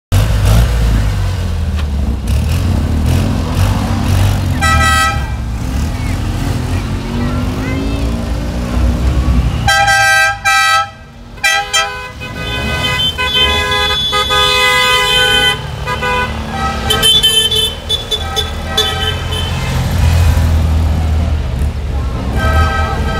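Small classic Fiat 500 cars driving past in a slow procession, their engines giving a steady low rumble, with car horns tooting: one short honk about five seconds in, then a long run of overlapping honks from about ten seconds, and more just before the end.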